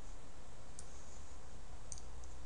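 Two faint computer mouse clicks about a second apart, over a steady low background hum.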